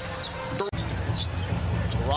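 Live basketball game sound: a ball bouncing on a hardwood court against steady arena crowd noise. The sound breaks off abruptly just under a second in and comes back with a louder low crowd rumble.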